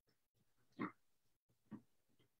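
Near silence, broken by one short faint sound a little under a second in and a fainter one near the end.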